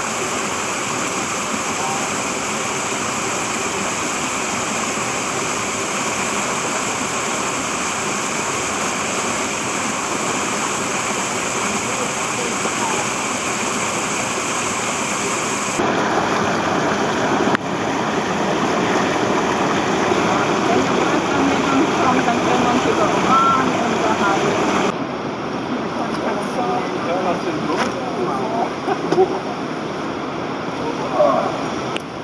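Rushing water of a waterfall and torrent in a narrow rock gorge, a steady rush of noise whose character changes abruptly about 16 s in and again about 25 s in.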